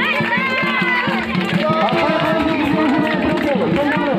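Music: voices singing a folk song with long, gliding held notes over a quick, steady drum beat.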